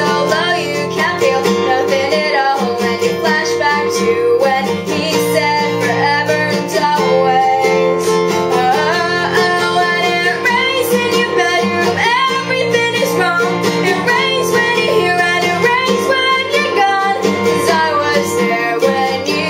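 A woman singing a pop ballad with her own nylon-string acoustic guitar accompaniment, steady chords played under the melody.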